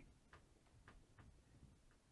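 Near silence: room tone with a few faint, isolated clicks.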